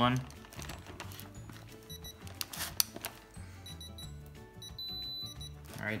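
Pittsburgh Pro digital torque adapter beeping as a bolt is tightened: two short high beeps about two seconds in, which mean it is within 20% of the set torque, then a long steady beep near the end, which signals the 10 ft-lb target torque is reached. A few sharp clicks from the ratchet come between the beeps.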